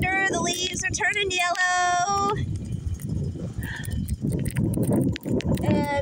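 Wind buffeting the microphone in an uneven low rumble, taking over after a drawn-out spoken word in the first two seconds.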